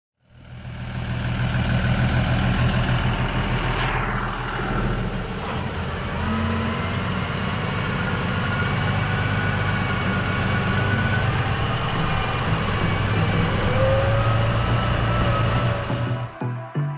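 Claas Arion tractor's diesel engine running steadily while pulling a loaded muck spreader, fading in over the first second, with a faint whine above the engine note.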